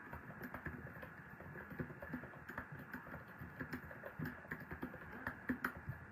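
Faint, irregular light clicks and taps, several a second, over a steady low hiss of room noise.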